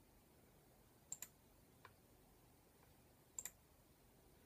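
Faint computer mouse clicks against near silence: a quick double click about a second in, a single soft click shortly after, and another double click past three seconds.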